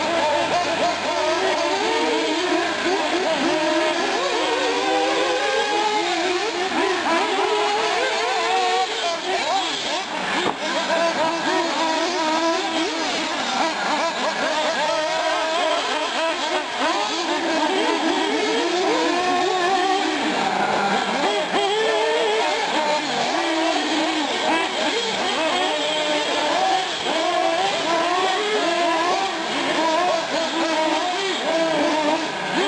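Several 1/8-scale nitro R/C cars' small engines racing around a dirt track. Their high pitches rise and fall over one another as the cars throttle up on the straights and back off for the turns.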